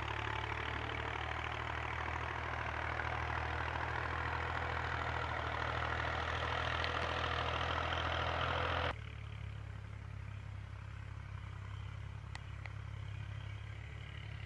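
Distant tractor engine running steadily, heard as a low hum. A louder noisy layer over it cuts off abruptly about nine seconds in.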